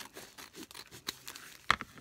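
Scissors snipping through a folded paper napkin, with light rustling of the paper and one sharper snip near the end.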